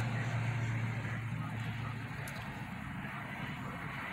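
Vehicle engine idling, a steady low hum heard inside the cab that eases off slightly over a few seconds.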